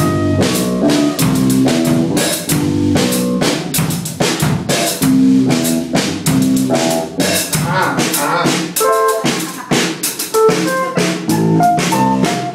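Live rock band playing: an acoustic drum kit is struck hard and fast on snare, bass drum and cymbals, under electric guitar riffs. About nine seconds in, the low end drops out briefly and higher guitar notes come through.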